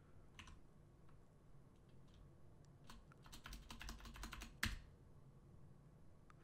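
Faint computer keyboard typing: scattered keystrokes, then a quick run of keys about three seconds in, ending with one sharper keystroke.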